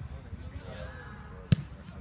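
A football struck once with a sharp thud about one and a half seconds in, with a fainter knock at the very start. Players' distant shouts run underneath.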